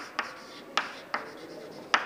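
Chalk writing on a chalkboard: about five sharp taps as the chalk strikes the board, with faint scratching between them.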